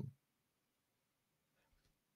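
Near silence: room tone during a pause in speech, with the end of a spoken word at the very start.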